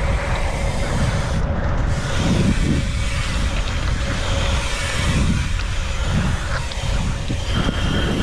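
Wind rushing over an action camera's microphone while a BMX bike rolls down the track, with tyre noise as it moves from asphalt onto dirt. The noise is steady and heavy in the low end, with a few brief swells.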